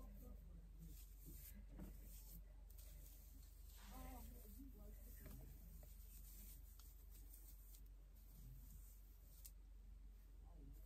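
Near silence with faint rustling of synthetic wig hair as fingers comb and fluff the curls, and a brief faint murmur of a voice about four seconds in.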